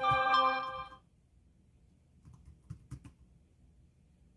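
A steady pitched tone sounds for about a second at the start, the loudest thing here. Then come a few clicks of computer keys being typed, a little past the middle.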